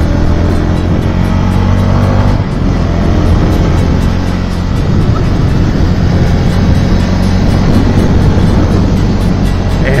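Zontes V1 350 motorcycle's 350 cc engine running steadily under way, with wind and road noise rushing past the microphone.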